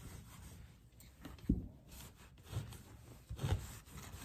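Cloth rag rubbing dark wax into the paper surface of a decoupaged panel, a rough scrubbing, with a dull thump about one and a half seconds in and another near three and a half seconds.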